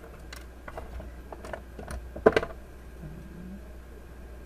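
Scattered small clicks and knocks from an Android TV box being handled while someone feels for the reset button inside its audio/video port. The loudest knock comes just past the middle, and a steady low hum runs underneath.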